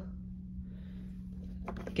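Steady low hum of room tone, with faint soft rubbing as hands ease the damp clay slab open around its paper wrap.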